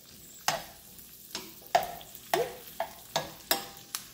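Metal spoon clicking and scraping against a skillet as green beans are stirred in hot bacon grease, about two sharp clicks a second, some ringing briefly, over a faint sizzle with grease still spitting a little.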